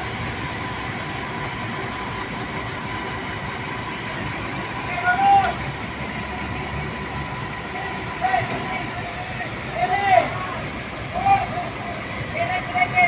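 Diesel engines of a mobile crane and a large forklift running steadily, with a thin steady whine over them. Short shouted calls from workers come several times in the second half.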